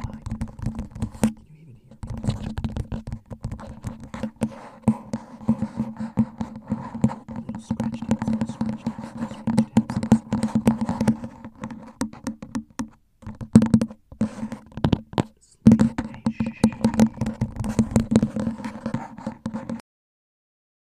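Fingers tapping and scratching fast on a plastic cup fitted over a microphone, the taps close together with a hollow resonance from the cup. There are a few short pauses.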